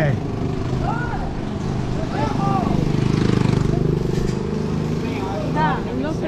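A motor vehicle's engine passing close by, growing louder to a peak about halfway through and then fading, with snatches of voices over it.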